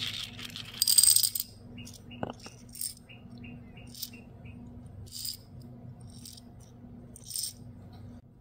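Small crystal rhinestones tipped from a plastic sorting tray into a small clear plastic jar, clattering in about a second in. Then they clink and rattle against the jar's sides in short bursts about once a second as the jar is tilted.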